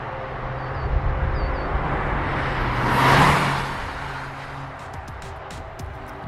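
A Toyota GR Corolla Circuit drives past. Its engine and tyre noise grow, peak about three seconds in, then fade away.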